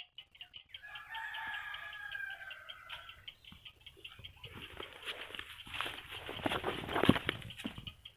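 A bird's long drawn-out call held for about two seconds, starting about a second in, followed in the second half by a run of clicks and rustles, the loudest near the end.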